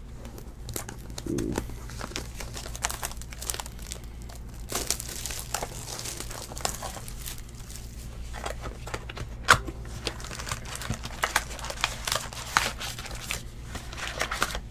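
Plastic wrap on a trading-card hobby box being torn off and crinkled by hand, a steady run of crackles with one sharper snap about nine and a half seconds in.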